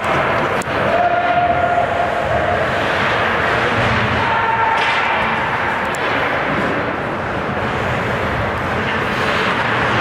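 Ice hockey game ambience in an indoor rink: continuous skate and arena noise, with occasional sharp clacks of sticks and puck and a couple of brief held calls from players.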